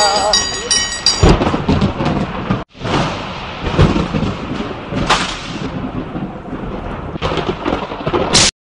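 A metal triangle struck in a quick, even rhythm of about three strokes a second, ringing, with a voice over it, stopping a little over a second in. Then a loud, noisy rumble takes over, breaking off for an instant just before the three-second mark and resuming.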